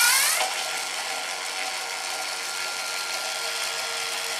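Handheld cordless drill-driver running continuously with a steady whine from its motor and gearbox, rising in pitch as it spins up at the start and then holding an even speed, as if driving a screw out of the animatronic.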